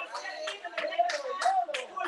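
Rhythmic hand clapping, about three sharp claps a second, over a woman's voice preaching.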